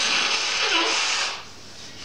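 A man blowing his nose into toilet paper, one long blow of about a second and a half that then dies away. It comes from sinus congestion that he puts down to concrete dust.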